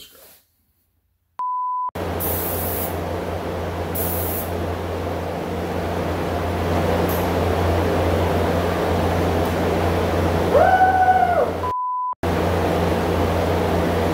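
A short one-pitch censor bleep, then a spray booth's ventilation running loud and steady with a low hum. Two short high hisses of air from a gravity-feed spray gun come early on. A second bleep follows near the end.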